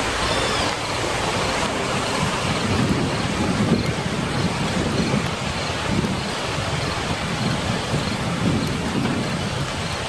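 Steady hiss of rain with low rolling rumbles that swell and fade every second or two.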